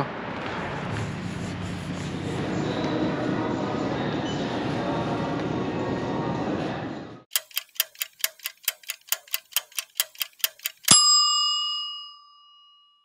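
Countdown sound effect: fast clock ticking, about five ticks a second for some three and a half seconds, ending in one loud bell ding that rings on. Before it, steady background room noise.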